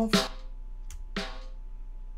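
Snare drum played back alone through a vintage exciter send: two hits about a second apart, each ringing out, with the exciter adding bright top-end harmonics without EQ.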